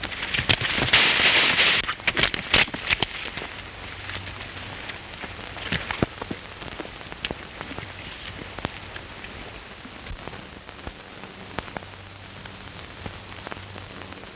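Hiss and crackle of an old optical film soundtrack, with scattered clicks and pops over a faint low hum. A louder rush of noise comes briefly about a second in.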